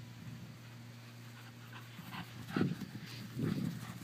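A cocker spaniel panting, with a few short breaths in the second half, over a faint steady low hum.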